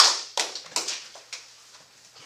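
Hand claps from a few people, sharp and fairly loud at first, thinning out and stopping about a second and a half in.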